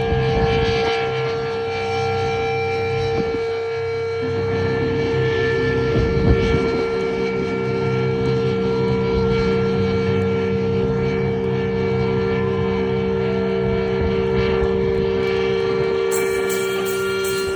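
Live metal band's amplified electric guitars holding a loud, steady droning chord through the PA, with several notes sustained and no drums playing.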